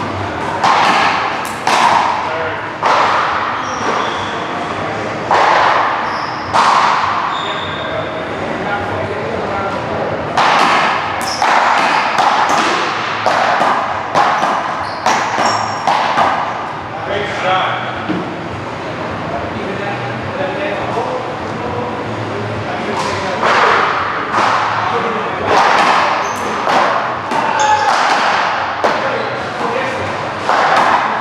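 Paddleball rally: a hard rubber ball struck by solid paddles and smacking off the front wall. The hits come in spells about a second apart, each with a ringing echo in a large hall.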